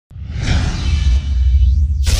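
Logo-animation sound effect: a swelling whoosh over a deep rumble, with a rising sweep near the end that leads into a sharp new hit.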